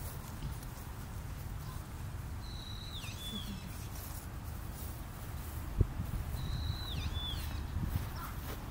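Long-eared owl young giving its high, squeaky begging call, a held whistle that then dips and rises again, twice about four seconds apart. A single sharp low thump comes about three quarters of the way through, over a steady low rumble.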